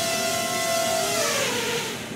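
Tello mini quadcopter's four propellers whining as it lands; the pitch holds, then falls in the second half as it sets down, and the motors cut off at the end.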